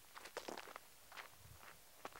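Faint footsteps on a dirt trail: a handful of soft, irregularly spaced steps.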